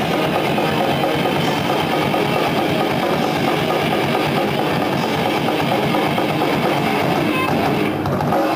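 Death metal band playing live, electric guitars to the fore, a dense wall of sound that runs on without a break.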